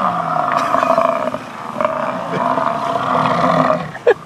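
American bison bellowing: two long roars with a short break about a second and a half in, the second one fading out just before the end.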